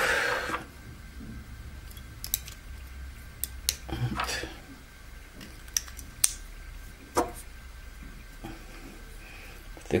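Quiet, scattered small clicks and scrapes of AA batteries being handled and pushed into a plastic battery holder by hand.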